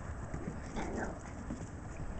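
A Shiba Inu puppy gives one brief vocalisation about a second in, over a steady low rumble.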